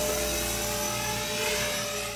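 Blade 450 3D electric RC helicopter in flight, its motor and spinning rotor blades giving a steady whine.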